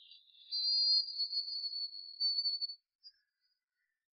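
A high, thin ringing tone starts about half a second in, wavers slightly for about two seconds and then cuts off; it is a sound-effect tone with no lower sound under it.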